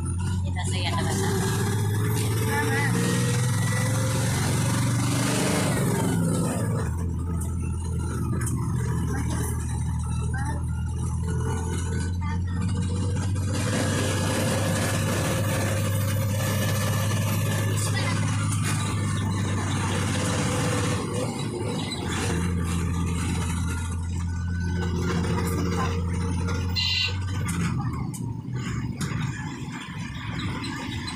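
Bus diesel engine drone heard from inside the cabin as it runs along a winding ghat road, easing off about seven seconds in and pulling harder again after about twenty seconds, with indistinct voices over it.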